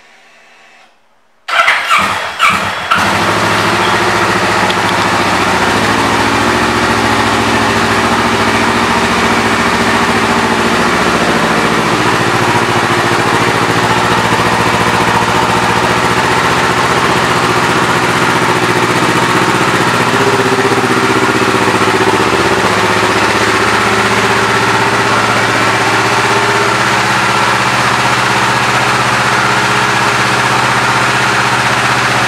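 A 2010 Kawasaki ER-6n's parallel-twin engine, fitted with a Yoshimura exhaust, is started about a second and a half in. A brief burst of cranking and catching settles within a couple of seconds into a steady idle.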